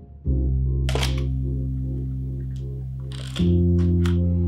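Mamiya RB67 medium-format camera shutter firing, giving two sharp mechanical clacks, one about a second in and one near the end. Sustained background music chords play under them.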